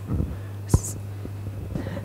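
A lull between speakers: faint whispered or murmured voices near the microphone over a steady low electrical hum, with one short sharp click about three-quarters of a second in.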